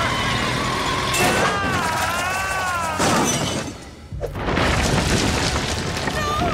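Cartoon soundtrack music with sound effects: a wavering melody, a sudden crash-like burst about three seconds in, and after a brief drop, a boom a little after four seconds.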